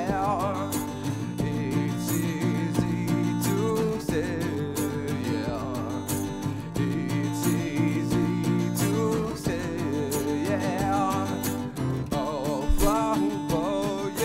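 Steel-string acoustic guitar strummed in a steady rhythm, with a wordless sung vocal line wavering over it in a few short phrases.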